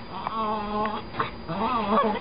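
Bichon frise warbling: two drawn-out, whine-like calls whose pitch wavers up and down, the second starting about halfway through.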